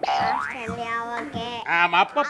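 Cartoon-style comic sound effect: a quick upward boing-like glide in pitch, then a held, steady tone.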